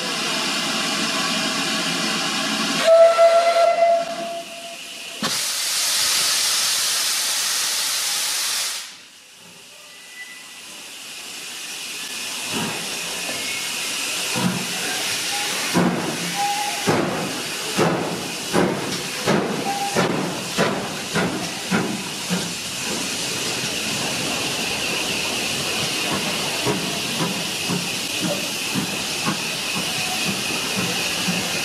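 GWR 4200-class 2-8-0 tank locomotive 4270 starting a train: a short whistle about three seconds in, then a loud hiss of steam for a few seconds. After that come regular exhaust chuffs, about one to two a second, as the engine pulls away.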